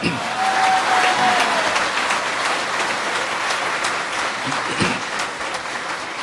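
Audience applauding, the clapping steady and slowly tapering off toward the end.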